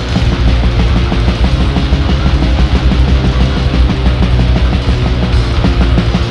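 Death/black metal from a 1996 demo tape: a dense, loud full-band sound with a fast, steady beat.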